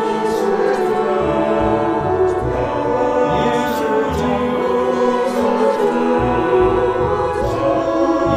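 A choir singing a Chinese hymn with orchestral accompaniment, the sustained sung lines steady and full.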